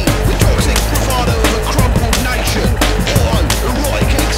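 Loud, fast band music without vocals, driven by rapid, steady drumming.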